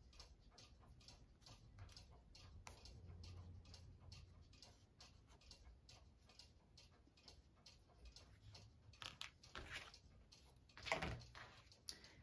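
Near silence: quiet room tone with faint, rapid ticking clicks, and a few soft handling sounds near the end.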